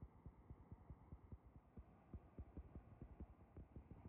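Faint rushing of a flooded river pouring over a waterfall, overlaid by irregular low thumps several times a second.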